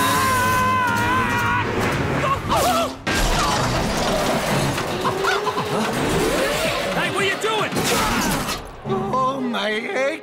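Cartoon action sound effects over a music score: a character's drawn-out yell at the start, then a long crashing, shattering din with a dust cloud of debris that lasts several seconds and dies away near the end.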